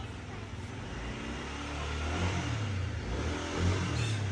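A motorbike engine running close by, its low hum growing slowly louder, over a haze of street noise.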